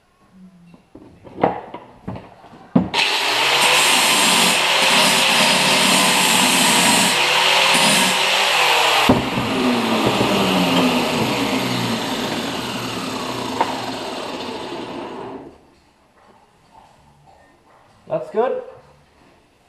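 A handheld electric power tool runs loud and steady for about six seconds, then is switched off about nine seconds in and winds down with a falling pitch over the next six seconds. Two sharp clicks come just before it starts.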